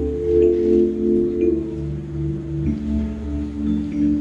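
Live rock band playing an instrumental passage: held keyboard and guitar chords over a steady bass line, the chord changing about one and a half seconds in and again a little before three seconds.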